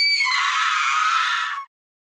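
A long, loud, high-pitched scream that turns rougher about a quarter of a second in, then cuts off abruptly shortly before the end.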